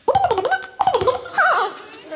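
Beatboxer's voice through a microphone making short sliding, laugh-like vocal sounds broken by sharp mouth clicks.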